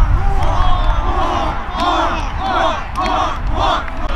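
A group of players shouting and cheering together, ending in about four loud shouts in quick rhythm, about half a second apart. Wind rumbles on the microphone underneath.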